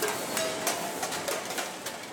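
Recycling sorting machinery running, with irregular clattering and knocking of metal cans and plastic bottles over a steady mechanical noise.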